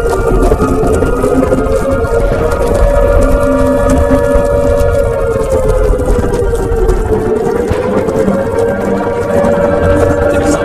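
Sustained eerie electronic drone, a science-fiction UFO sound effect or score, whose pitch sways slowly down and up, over a low rumble that drops away about seven seconds in.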